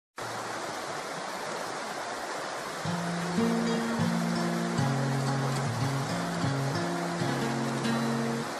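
Spring water pouring from a small spout and splashing into a shallow pool, a steady rush of water. Background music with a slow melody of low notes comes in about three seconds in and plays over it.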